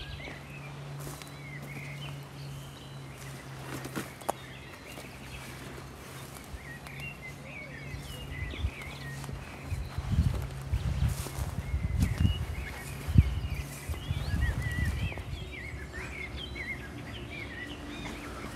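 Outdoor ambience of small birds chirping and singing throughout, over a low steady hum that stops about three-quarters of the way in. Footsteps and rustling through undergrowth come up near the middle.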